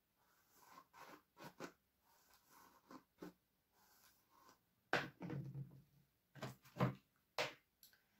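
Hairbrush strokes through long hair: a run of soft, short brushing swishes, with a sharper light knock about five seconds in and a few louder handling sounds after it.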